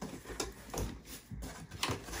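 Cardboard box flaps being pulled open by hand: several short scrapes and rustles of cardboard.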